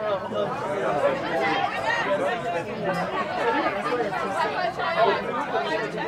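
Several people talking at once in French, overlapping chatter with no single voice standing out.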